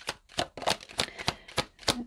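Tarot cards handled and shuffled by hand: a quick run of sharp card snaps and flicks, about five a second.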